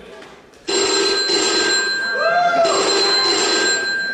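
Mobile phone ringtone signalling an incoming call. It starts abruptly under a second in and rings in two bursts, each a little over a second long.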